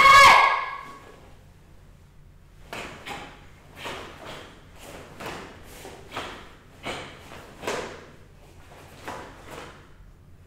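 A karateka's loud kiai shout, falling in pitch and lasting about a second. After a short pause comes a run of about a dozen short, sharp snaps, about half a second apart, as the karate uniforms crack with each punch and block in kata.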